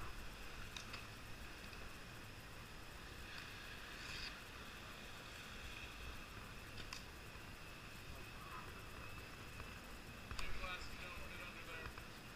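Faint distant voices over a low background hum, with a few scattered sharp clicks and knocks.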